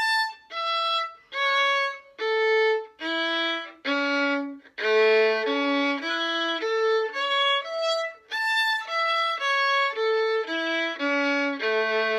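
Violin playing a two-octave A major arpeggio (A, C-sharp, E) in separately bowed notes: down from the high A to the low A, back up to the top, then down again to a longer held low A at the end.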